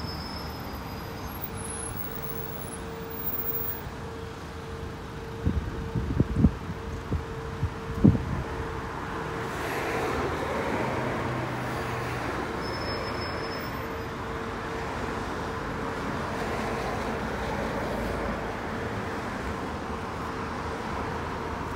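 Road traffic in a slow queue: engines running with a steady hum, growing into a fuller rush of moving vehicles from about ten seconds in. Between about five and eight seconds there are several sharp low thumps, the loudest sounds.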